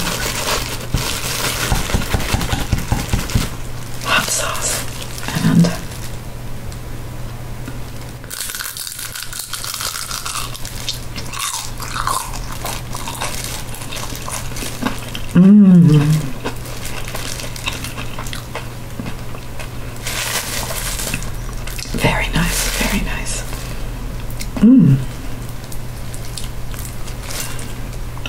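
Close-miked biting and chewing of a crunchy fried spring roll (lumpia), with scattered crunches and small mouth clicks. A few short hums from the eater's voice come about 5, 15 and 25 seconds in.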